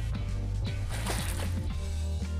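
Background music with a steady low bass.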